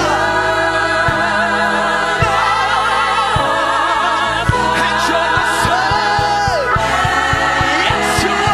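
Gospel praise team singing a hymn in sustained voices with vibrato, backed by a band of piano, Hammond organ, bass guitar and drums keeping a steady beat.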